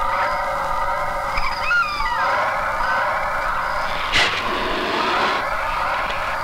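Eerie film background score: sustained high synthesizer tones with a few sliding notes, and a sharp whooshing hit about four seconds in.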